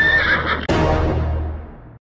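A horse whinnying over background music: a pitched call that rises and then holds, then a sudden, rougher burst about two-thirds of a second in that fades away.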